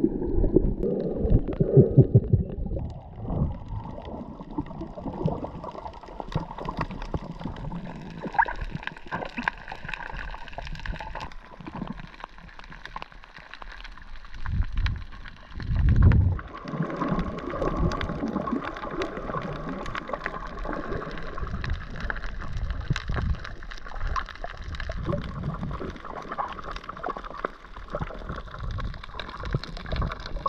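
Muffled underwater sound picked up by a submerged camera: water gurgling and sloshing, with heavier low rumbles near the start and about halfway through, and a scatter of faint clicks.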